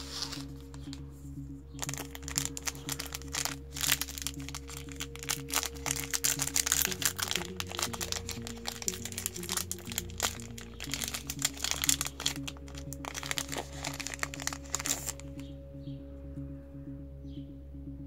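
Foil booster-pack wrapper crinkling and tearing as it is opened by hand, from about two seconds in until near the end, over steady background music.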